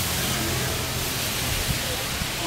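Steady rushing outdoor background noise, with faint voices from a crowd of onlookers.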